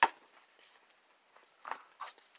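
A basketball bouncing once on the ground, a single sharp knock.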